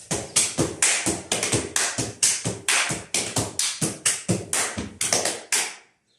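Rapid series of sharp hand slaps on the thighs and shins with claps, a Roma men's dance slapping sequence played in groups of two thigh slaps and one shin slap, about four to five strikes a second, stopping suddenly near the end.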